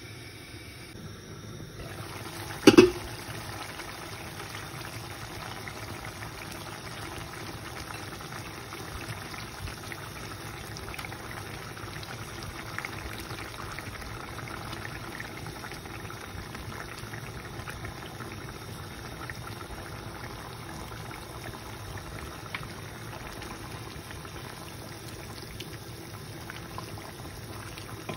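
Curry liquid simmering in a cooking pan, a steady bubbling hiss with scattered small pops. A single sharp knock about three seconds in.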